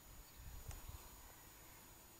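Near silence with faint hiss, broken by a few faint low thumps and one sharp click between about half a second and a second in.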